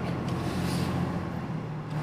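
Steady low hum of a vehicle's engine running, heard from inside the cab, with road traffic noise around it.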